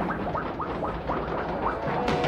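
Cartoon sound effects of a submarine knocked into a spin after a blow: a noisy rumbling clatter with a run of short falling whistle-like tones, about four a second.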